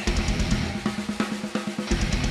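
Pearl rock drum kit playing a steady beat live on kick drum, snare and hi-hat, over a held low note from the band.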